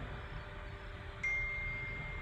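A single steady high tone, held evenly for about a second from a little past halfway in, over low room noise.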